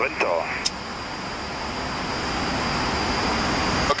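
Steady rushing noise of a Boeing 737 flight deck in flight, the airflow and engine noise heard in the cockpit, growing slightly louder toward the end.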